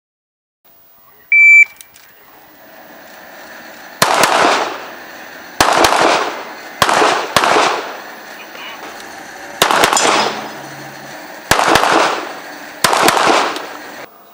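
A short high electronic beep, like a shooting-competition shot timer's start signal, followed a couple of seconds later by about a dozen pistol shots, fired singly and in quick pairs, each with a short echo.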